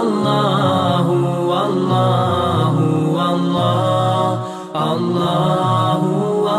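Vocal nasheed chant on the word 'Allah': a male voice in long, slowly moving sung notes, layered with echo, with a brief break about four and a half seconds in.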